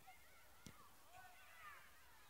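Faint, distant high-pitched children's voices calling out across an open football pitch, with a single sharp click about two-thirds of a second in.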